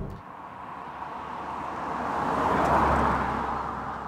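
2005 Volvo V70R with its turbocharged five-cylinder engine driving past on a country road. Engine and tyre noise swell to a peak about three seconds in, then fade as it draws away.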